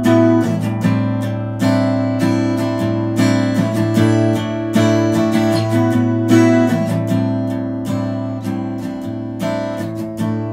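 Acoustic guitar strummed solo, with a heavier stroke about every second and a half and the chords ringing between strokes. It is the instrumental intro, before the vocal comes in.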